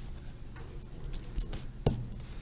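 Scratching and rustling of a paper spiral notebook being handled and shifted on a desk, with one sharp knock just before the end.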